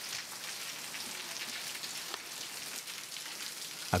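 Heavy rain falling steadily, a dense patter of many small drop impacts.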